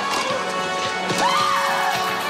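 Music with clip-clopping horse hooves and a horse whinny that rises and falls about a second in, playing from a television set.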